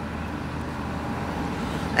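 Steady road and engine noise heard inside the cabin of a moving vehicle.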